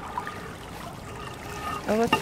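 Canal water pouring and splashing off a heavy rusty iron bar as it is pulled up out of the water on a magnet fishing rope.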